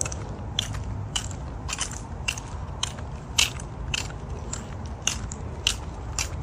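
Footsteps on a paved trail, a regular walking pace of about two crisp steps a second, over a steady low rumble on the microphone.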